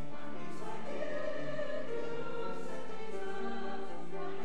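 Voices singing a slow hymn in long held notes.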